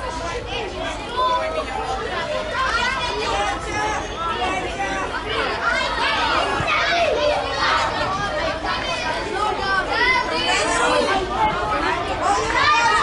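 Children's voices shouting and calling over one another on a football pitch, many at once and none clearly heard as words.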